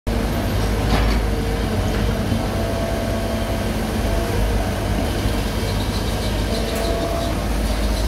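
Komatsu PC75 excavator's diesel engine running steadily under load as its hydraulics work the digging arm in the rubble, with a dump truck's engine running close by; a couple of faint knocks in the first two seconds.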